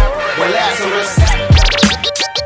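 Boom-bap hip hop beat with heavy kick drums and a short vocal snippet. Turntable scratching on vinyl comes in near the end.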